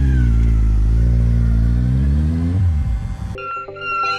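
Motorcycle engine running as the bike pulls off, its note dropping and then climbing again before fading out. Near the end a few clear electronic musical tones come in.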